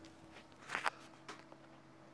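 Faint movement and handling sounds: a soft scuff or rustle about three-quarters of a second in and a fainter one a little later, over a low, steady hum.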